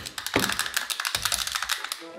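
Rapid run of small clicks and crackles from objects being handled at a table.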